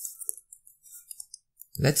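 A series of light, short, high-pitched clicks from a computer input device as on-screen writing is selected and deleted, followed near the end by a man's voice starting to speak.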